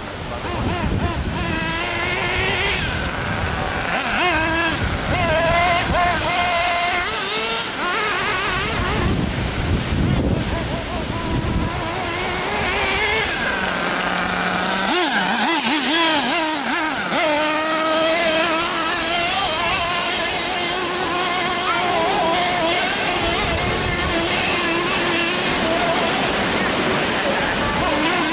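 Nitro RC buggy's small two-stroke glow engine revving up and down as it is driven, its pitch rising and falling over and over.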